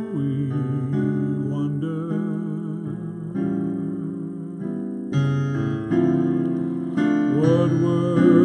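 Slow jazz ballad chords on an electric keyboard piano, changing about once a second and growing louder over the last few seconds, with a man's voice singing softly along.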